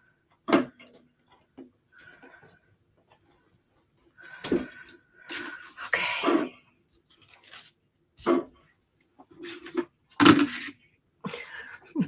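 Scattered short clicks and knocks from hands working at a craft table, as scissors trim the tails of a wired ribbon bow and the pieces are handled and set down. There are about half a dozen separate sounds with near silence between them.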